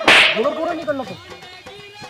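A single loud, sharp slap, a hand striking a person, right at the start, dying away within a fraction of a second.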